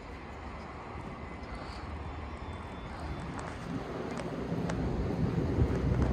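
Steady low rumble of city traffic with wind on the microphone, slowly growing louder toward the end.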